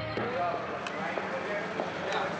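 A man shouting over a noisy background.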